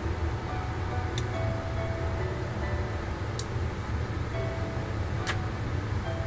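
Faint background music over a steady low hum, with three sharp clicks spread through it as a clear plastic model-kit sprue is handled and a part cut from it.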